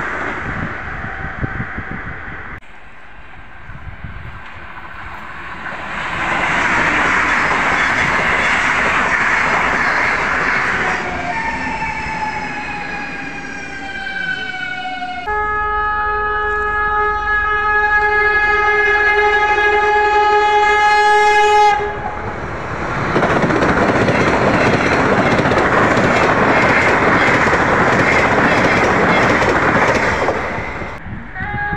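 Sapsan (Siemens Velaro RUS) high-speed electric trains passing station platforms at speed: a loud rush of wheel and air noise that fades and builds again, and a multi-tone horn that slides down in pitch as a train goes by. A long steady horn blast follows, then another loud pass-by rush, from a train at about 130 km/h.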